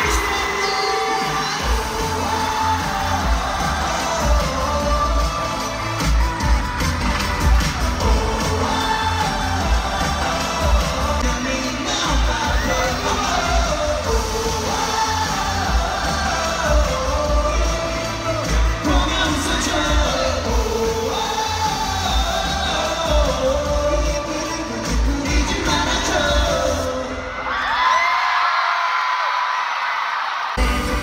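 Live K-pop song over the arena sound system, recorded from the audience: a heavy bass beat under male group vocals, with the crowd cheering. The bass drops out briefly near the end.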